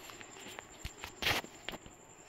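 Handling noise from a phone held close to the microphone: a few soft knocks and a short rustle about a second and a quarter in.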